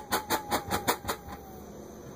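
Alcohol vapour burning out inside a large glass jug: the flame puffs rhythmically, about five or six pulses a second, under a faint slowly falling tone. The puffing dies away about a second and a half in.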